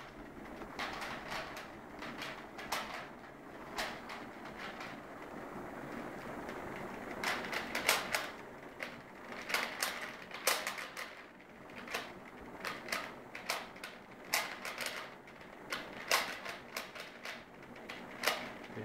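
A plastic 3x3x3 Rubik's cube being turned fast by hand during a speed-solve: its layers clicking and clacking as they snap round, in uneven bursts of quick turns with brief pauses between them.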